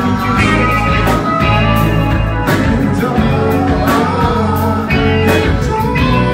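Live funk and R&B band playing amplified in a club: electric guitars, keyboards, saxophone and drum kit, with a lead singer's voice over the groove and regular drum hits.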